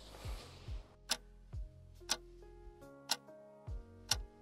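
Clock ticking, about one tick a second, marking a one-minute timer, over soft background music with sustained notes and low thumps.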